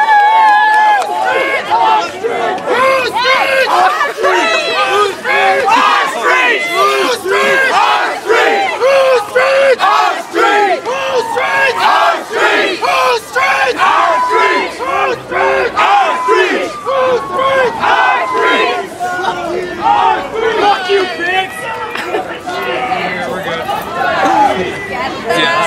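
A large crowd of people shouting and yelling over one another, loud and unbroken, with many voices overlapping at once.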